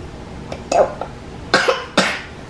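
A woman coughing: three short coughs a little under a second apart, the last right at the end.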